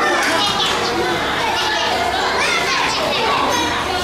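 A crowd of schoolchildren's voices: many high-pitched calls, shouts and chatter overlapping at once.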